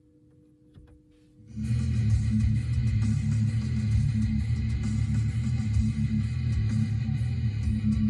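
Car radio playing rock music with guitar through the car's speakers. It starts about a second and a half in, after a near-silent pause, and then plays steadily.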